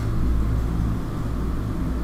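A steady low hum with faint hiss and no distinct events: the background noise of a recording microphone.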